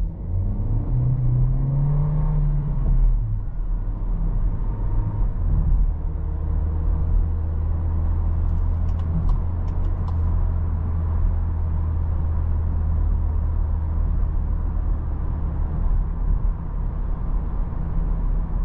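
Inside the cabin, the 2024 Seat Ateca's 1.5 litre four-cylinder petrol engine pulls away with its note rising, drops back as the automatic gearbox changes up, and then settles into a steady low hum as the car cruises, over constant road noise.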